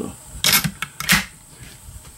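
Metallic clicks and clacks from the action of a Savage 99 lever-action rifle being handled: a quick series of about four sharp clicks within the first second or so.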